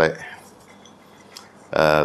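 A man's voice trailing off, a pause of faint room tone with one soft click, then his speech resuming near the end.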